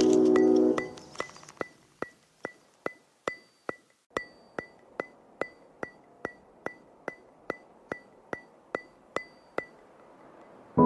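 Background music: a held chord dies away in the first second. Then a steady ticking follows, about two and a half ticks a second, each tick with a short high ring. The ticking stops near the end.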